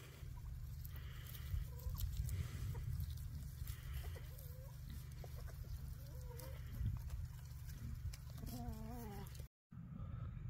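A free-range flock of chickens clucking, with short scattered calls over a steady low rumble. Near the end comes a longer wavering call.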